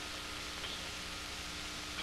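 Steady background hiss with a faint, even hum underneath, the noise floor of an old lecture recording.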